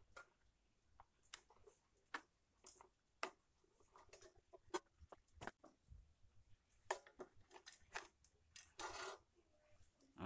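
Faint, irregular clicks and taps of a clothes iron's plastic housing being handled and pressed back onto its soleplate during reassembly.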